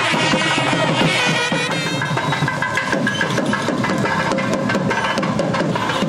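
Nadaswaram and thavil band playing: a bending, wavering pipe melody over dense, rapid thavil drum strokes.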